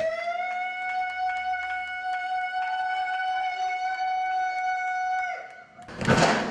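A single high lead note on an electric guitar, bent up slightly into pitch and then held steady for about five seconds before it fades away.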